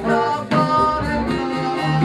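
Live traditional folk band music: a man singing, with the band playing behind him.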